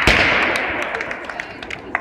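A confetti cannon going off with a bang right at the start, followed by applause and crowd noise that fade over the next two seconds.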